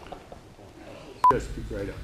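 A single short electronic beep with a sharp click, about a second and a quarter in, at the cut between two takes. Men's speech starts straight after it.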